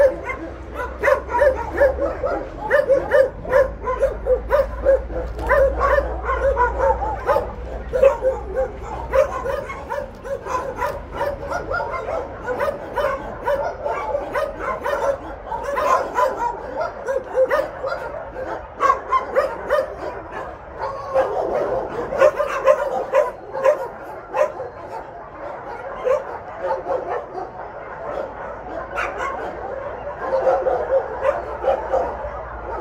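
Many dogs barking and yipping, short overlapping barks keeping up continuously.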